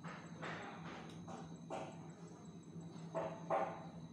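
A dog barking repeatedly, about six barks with the loudest near the end, over a steady electrical hum and a faint high whine.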